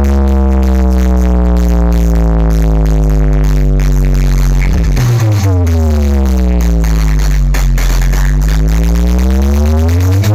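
Deep electronic bass through a large outdoor sound system of stacked subwoofers: one long, slowly falling bass note, a sudden break about halfway, then a bass glide that dips and rises again. It is loud, with no beat.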